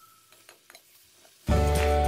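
Faint clicks of metal tongs against a frying pan as pork hock pieces are turned, with a light sizzle. Background music comes back in loudly about one and a half seconds in.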